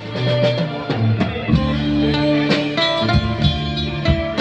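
Small live band playing an instrumental passage: electric bass, acoustic guitar and keyboard over drums, with the guitar to the fore.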